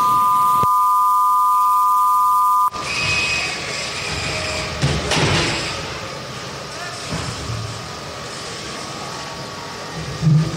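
Steady electronic buzzer tone, two pitches sounding together, marking the end of the match; it cuts off suddenly about three seconds in. After that there is background arena noise, with a single knock about five seconds in.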